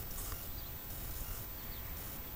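Quiet outdoor background: a steady low rumble with a faint hiss and no distinct events.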